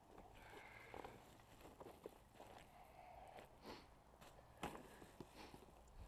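Faint rustling and crackling of plastic rubbish being handled and pushed into a plastic sack, with a few scattered light knocks.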